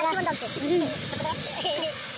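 Hot oil sizzling steadily in a pot as food fries in it, with people talking over it.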